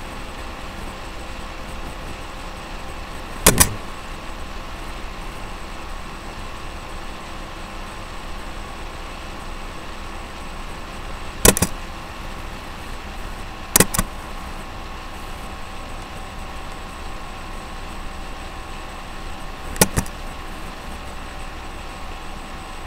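Steady room hum with faint steady tones, broken four times by short sharp clicks, some in quick pairs.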